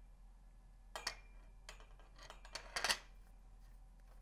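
Metal clinks and clanks of a C-stand's grip head (knuckle) and arm being handled and set back onto the top of the stand: a handful of short sharp clicks, the loudest knock about three seconds in.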